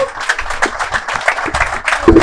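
A small live audience applauding: many hands clapping in a dense, steady run.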